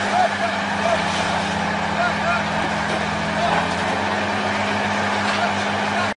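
A heavy truck's diesel engine running steadily, with a constant low drone under a wash of noise. Indistinct voices of onlookers are heard behind it.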